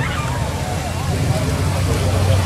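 Car engine running at low revs with a steady low rumble as a sedan rolls slowly past, growing a little stronger near the end.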